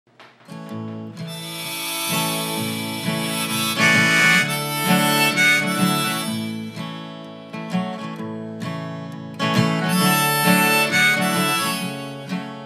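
Harmonica in a neck rack playing sustained melody notes over strummed acoustic guitar, with no singing yet.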